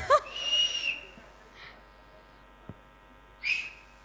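Audience members whistling: a steady high whistle held for under a second at the start, then a second short whistle near the end.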